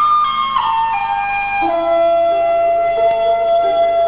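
Chinese bamboo flute (dizi) playing a slow melody that steps down through a few notes over the first two seconds, then holds one long note, over a quieter lower accompaniment.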